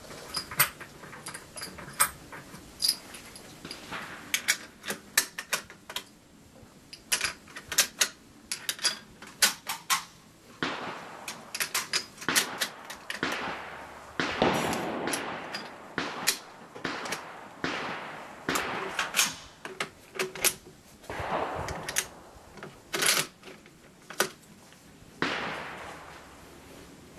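Gunshots from other shooters on a busy range: sharp cracks, irregular and at times several a second. Around the middle come longer scraping and handling sounds of a rifle being worked at the bench.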